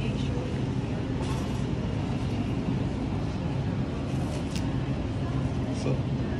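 Steady low hum of a grocery store's background machinery, with a faint click about four and a half seconds in.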